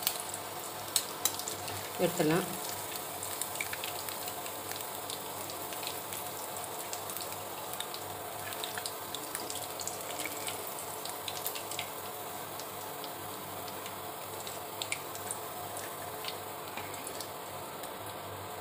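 Chicken pakoda deep-frying in hot oil in a kadai: a steady sizzle with scattered crackles and pops, stirred now and then with a slotted spoon.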